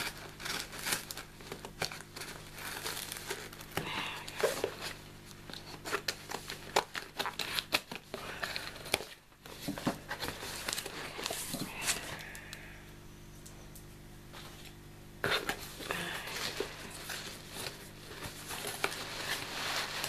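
A taped cardboard box being opened by hand: packing tape peeled and torn off and the cardboard flaps pulled open, making many irregular crackles, crinkles and tearing sounds. The sounds let up for a few seconds about two thirds of the way through.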